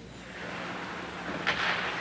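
Hockey practice on an arena rink: an even hiss of skates on the ice, with a brighter scrape about one and a half seconds in.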